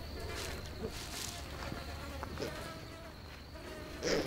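Flies buzzing around carrion, faint and wavering, over a steady low rumble.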